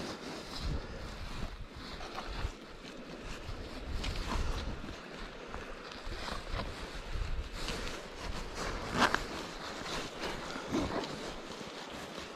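Handling noise of rope being knotted onto an iron anchor ring: soft rustles and small scattered clicks, with a sharper click about nine seconds in, over a light wash of wind on the microphone.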